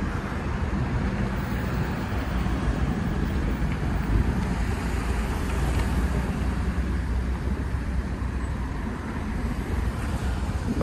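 Outdoor street ambience: a steady low rumble, with a brief louder surge about four seconds in.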